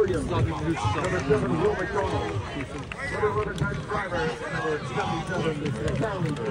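Several men's voices talking over one another, the words indistinct.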